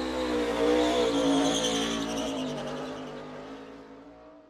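Race car sound effect: an engine note held at a steady pitch, fading out toward the end.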